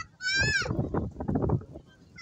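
A short high-pitched cry that falls in pitch, followed by people talking.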